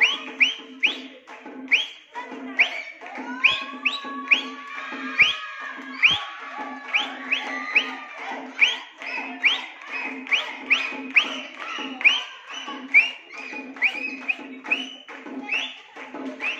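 A crowd clapping hands in a fast, steady rhythm, about two claps a second, with children's voices and shouts rising over the clapping through the middle.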